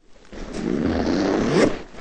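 A zipper being run in one long rasping pull of about a second and a half. It peaks near the end and cuts off abruptly.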